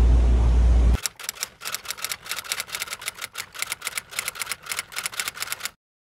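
Typewriter key-clacking sound effect: a rapid run of sharp clicks lasting about five seconds, then cut off abruptly. It is preceded, for about the first second, by a loud low rumble on the microphone that is cut off suddenly where the clicking begins.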